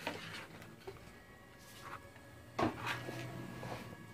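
Handling sounds from a plastic blister pack and its card backing being picked up and turned over: a few short crinkles and knocks.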